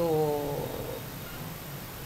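A woman drawing out a hesitant "so…" into a held hum at a steady pitch, which fades out within about a second and leaves quiet room tone.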